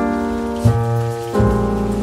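Instrumental background music led by piano or keyboard, with sustained chords that change twice over a deep bass.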